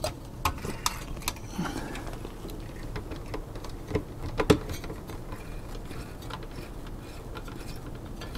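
Scattered small clicks and taps of metal hardware being handled as a CPU cooler's mounting screws are tightened by hand, with a couple of louder knocks about four to four and a half seconds in.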